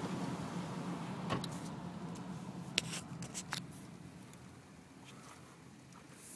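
Steady hum of a car's engine and tyres heard from inside the cabin, dying away over a few seconds as the car slows, with a few faint clicks.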